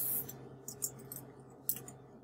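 Computer keyboard being typed on: a short run of light key clicks as a word is entered, with a brief soft hiss right at the start.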